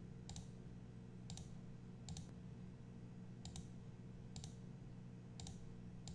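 Six faint computer mouse clicks, roughly a second apart, as settings are picked from dropdown menus and the Apply button is pressed. A low steady hum lies underneath.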